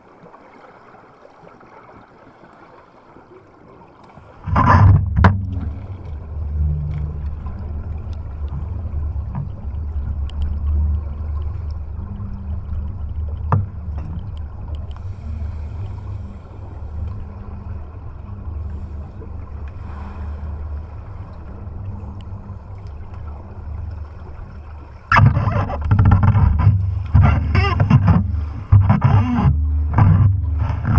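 Water rushing and churning over an underwater camera housing as a freediver swims with it, heard as a steady low rumble that starts suddenly a few seconds in. It grows louder and choppier in the last few seconds, with bubbling and splashing.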